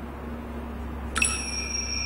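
A small bell struck once about a second in, then ringing on with a clear, high tone over a low steady hum.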